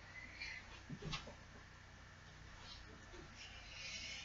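Quiet room with a couple of soft thumps about a second in, from a person kicking up into a handstand and coming back down onto the floor, and a faint rustle near the end.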